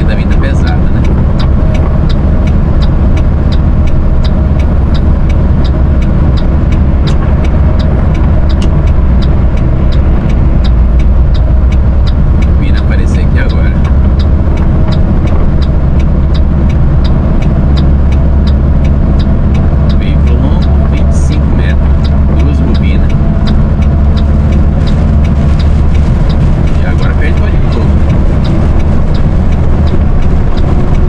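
Steady drone of a Mercedes-Benz Atego 3030 truck's diesel engine and road noise heard inside the cab while cruising at highway speed.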